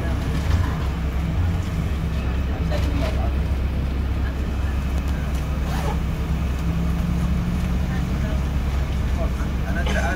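Steady low engine hum of a bus, heard from on board as it drives along the street, with voices talking in the background.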